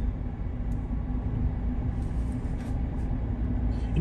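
A car driving, heard from inside the cabin: a steady low rumble of road and engine noise with a faint steady hum.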